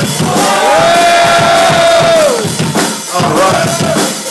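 Live psychobilly band playing loud, with the drum kit pounding under a held pitched note that slides up, holds for about two seconds and falls away, then a shorter one near the end.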